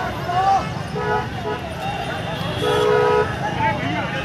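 Car horns honking in stalled traffic: a short honk about a second in, another brief one, then a longer honk near three seconds, over people's voices shouting.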